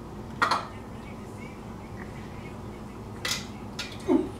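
Two short clatters of a food container or tableware being handled on a table, about half a second in and again a little after three seconds in, over a steady low room hum.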